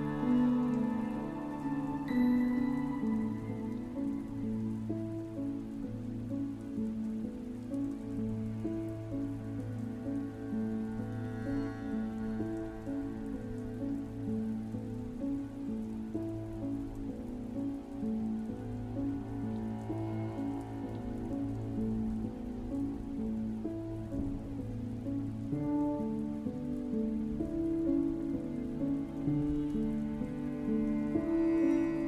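Slow, calm relaxation music of held piano and harp notes over a low sustained tone, layered with a steady recording of rain.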